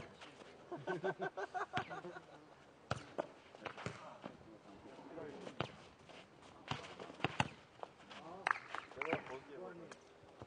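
A nohejbal ball being kicked and bouncing during a rally: a run of sharp, irregularly spaced thuds from about three seconds in, with men's voices calling out at the start and near the end.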